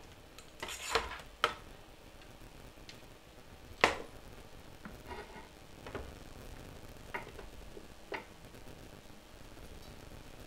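Handling noises on a wooden desk as a laptop and its cables are moved about: a short scrape about a second in, then a few separate knocks, the loudest near four seconds in.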